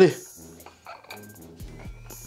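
A man's strained shout of "allez" as he pushes through a set of dumbbell curls, with arching pitch, then quiet with a couple of faint clicks. A low steady hum comes in near the end.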